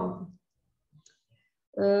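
A woman's speech trails off, followed by about a second and a half of near silence with a few faint clicks. Her voice then comes back in with a long, steady drawn-out vowel.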